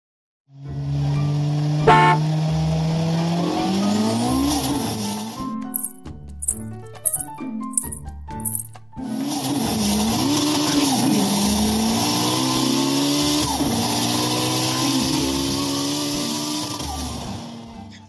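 A car engine sound revving up and down, over background music with a steady beat. The engine drops out for a few seconds in the middle, leaving only the music's stepped notes and beats.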